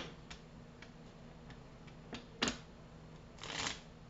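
Tarot cards being handled on a table: a few light card clicks, the sharpest about halfway through, and a brief rustle of cards being shuffled or slid near the end.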